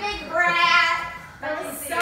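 A woman's voice holding a high, drawn-out note for about a second, then a shorter stretch of voice near the end.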